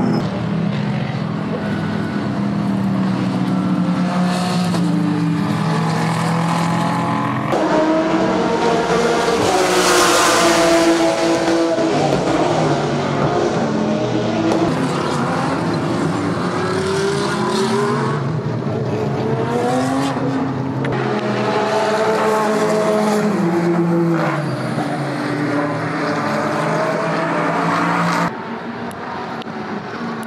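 GT race car engines at racing speed, pitch rising and falling as the drivers accelerate, shift and brake, with the loudest pass about ten seconds in. The sound changes abruptly twice as the shots cut.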